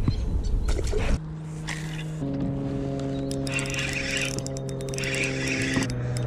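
A second of low rumbling noise with a few clicks, then background music comes in: sustained synth chords that change about a second later, with a light high shimmer above them.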